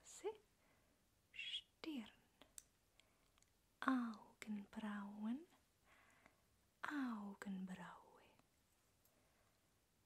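A woman's soft-spoken voice close to the microphone, saying a few short single words with pauses between them.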